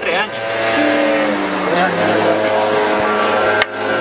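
A single sharp hammer blow on pallet wood near the end, over a steady, held pitched sound that shifts in steps between notes.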